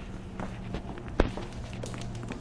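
Footsteps while walking, an irregular patter of light clicks and knocks with one sharper knock about a second in, over a steady low hum.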